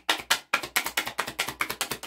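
A deck of oracle cards being shuffled by hand: a fast run of short card clicks and flicks, about nine a second.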